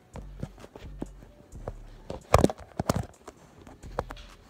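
Handling noise close to a phone's microphone as it is set down and propped up: a run of light knocks and bumps, with a louder cluster about two and a half seconds in.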